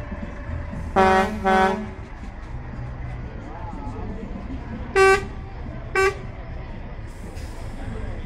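Lorry air horn sounded in two long blasts, close together, about a second in. Two short, higher toots follow about five and six seconds in, over the low running of passing engines.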